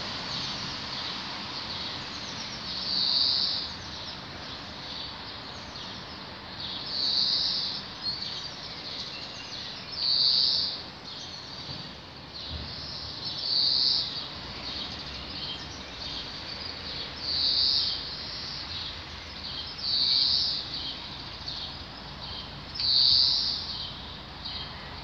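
A songbird repeating one short, high phrase about every three to four seconds, seven times, with fainter chirps from other birds between the phrases over a steady background hiss.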